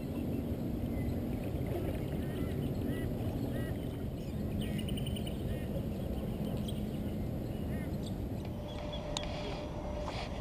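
Birds calling several times in short chirps and quick clusters of notes over a steady low rumble, with a sharp click just before the end.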